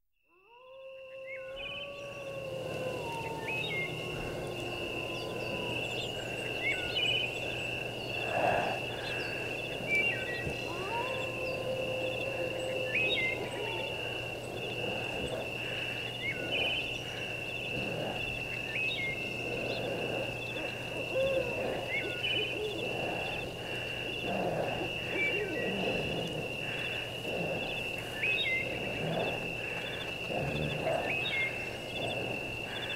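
Ambient soundscape fading in: a steady high whistling tone over a low hum, with slow gliding hoot-like calls and short chirps recurring every couple of seconds.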